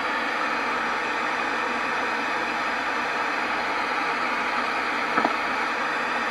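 Spirit box, a portable PLL radio scanning across the band, giving a steady hiss of radio static.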